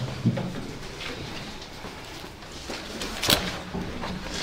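Meeting-room background with a faint, brief voice near the start and one sharp knock or click about three seconds in.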